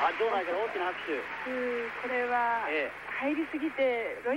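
Only speech: a television commentator talking, with some drawn-out vowels.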